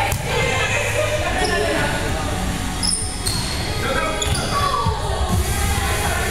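Volleyball rally in a gym: a few sharp smacks of the ball struck by hands and forearms, mixed with players' voices calling out, with the echo of a large hall.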